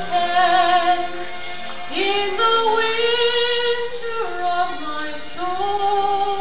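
Music with a female voice singing long held notes with a slight vibrato, moving step by step between pitches.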